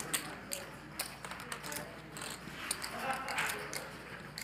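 Poker chips clicking at the table: many short, irregular light clicks, with faint voices murmuring in the room.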